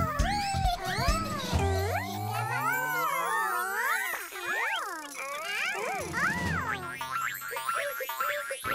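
Playful children's cartoon music with swooping, boing-like sliding sound effects, including one long rising slide in the middle; the bass beat drops out partway through and returns near the end.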